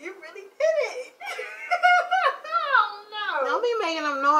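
A woman's high-pitched, wordless, laugh-like vocalizing, drawn out with the pitch sliding up and down, almost without a break.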